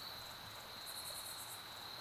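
Insects singing: a steady high-pitched drone, joined for about half a second near the middle by a faster, higher pulsing trill.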